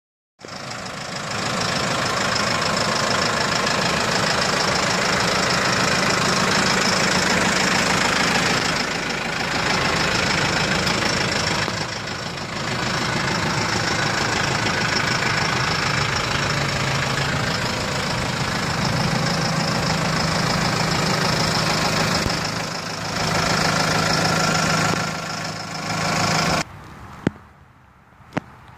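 New Holland T4.95 tractor's diesel engine running steadily at idle, a constant low hum under an even noisy drone. It cuts off suddenly about a second before the end.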